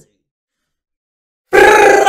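Dead silence for about a second and a half, then a man's very loud shout that breaks in suddenly.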